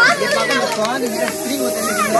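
Aerosol party snow-spray cans hissing continuously over a group of boys shouting and cheering.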